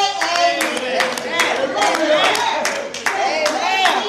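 A woman singing into a microphone, her voice gliding and held on long notes, with hands clapping along about two to three times a second.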